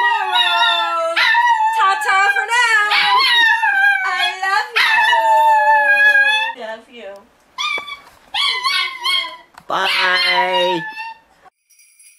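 A dog howling in long calls that glide up and down in pitch. A person's voice howls along with it. The howls break into shorter calls with gaps from about halfway through and stop about a second before the end.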